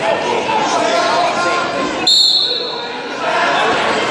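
Referee's whistle blown once, a short high-pitched blast about two seconds in, starting the wrestling bout, over steady crowd chatter in a large hall.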